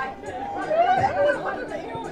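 Several men's voices talking and calling out over one another, with one louder call about a second in.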